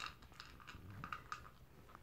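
A toy poodle eating its breakfast from a plastic bowl: faint, irregular crunching and clicking as it bites and chews its food.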